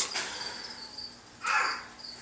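Faint, steady high-pitched chirping of crickets, with a brief louder sound about one and a half seconds in.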